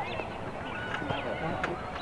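Distant calling and shouting of voices across an open soccer field, with one short sharp knock about three-quarters of the way through.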